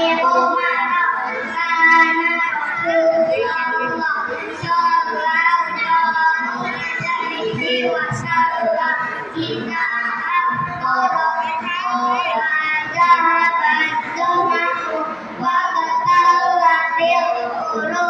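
A group of children singing together, a continuous melody with held notes.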